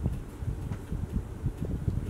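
Low, uneven rumbling background noise with a few faint, irregular knocks.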